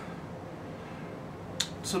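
Quiet room tone during a pause in a man's talk, broken near the end by a short, sharp click, with a fainter second click just after it, right before he starts speaking again.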